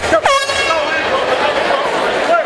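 A short air horn blast signalling the start of the round. It begins with a quick drop in pitch, holds steady for well under a second, then fades, with crowd shouting around it.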